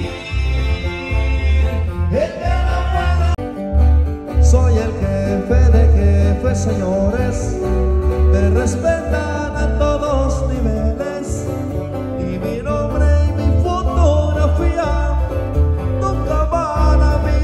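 Live sierreño band music: strummed and picked acoustic guitars over a heavy, pulsing bass line, played loud through a PA.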